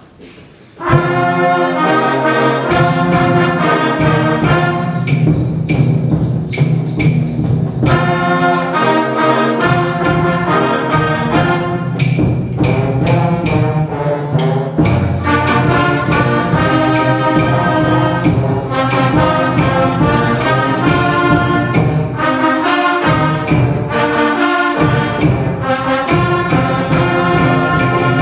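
A middle-school concert band begins playing a samba-style piece about a second in: brass and woodwinds carry the tune over a steady percussion beat.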